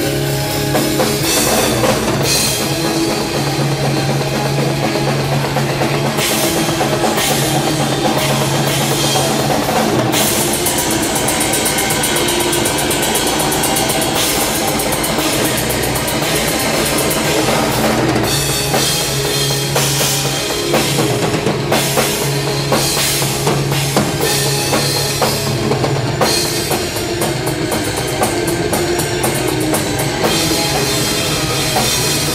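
Live heavy metal drum kit played hard over the full band, with kick drums and cymbals prominent. There are stretches of very fast, even strokes.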